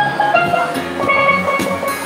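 A double steelpan played with rubber-tipped sticks: a run of quick struck melody notes, one of them ringing on for about a second halfway through.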